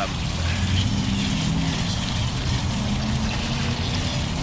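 Water from a garden hose running and water dripping off a wet tie-dyed shirt into a tub during rinsing, over a steady low hum.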